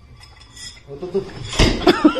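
A bowl clattering, with a loud crash about one and a half seconds in. Laughter starts just at the end.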